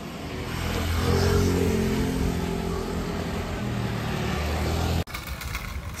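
A motor vehicle's engine running as it passes close by on the street, swelling about a second in and then easing off slowly, until the sound cuts off suddenly about five seconds in.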